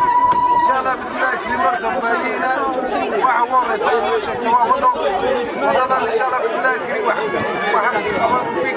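A man speaking in Somali through a handheld megaphone, over the chatter of other voices, with a brief steady whistling tone in the first second.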